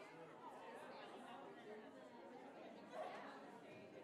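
Faint, indistinct chatter of many people talking at once in a large hall: a congregation milling about after the service ends. One voice rises briefly about three seconds in.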